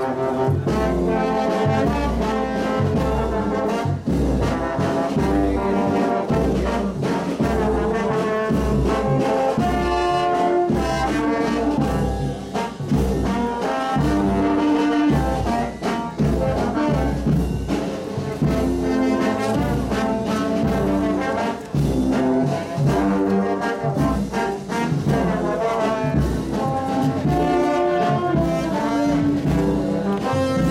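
Brass band playing, with trombones and trumpets carrying the melody over a steady low beat.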